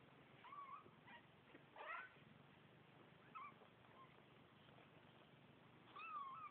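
Young Bengal kittens mewing faintly: a handful of short, thin, high calls, the clearest about two seconds in.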